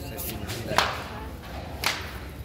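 Two sharp cracks, about a second apart, over a low background murmur.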